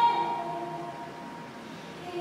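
Piano chords ringing and fading away in a pause between two sung phrases, a held sung note ending right at the start.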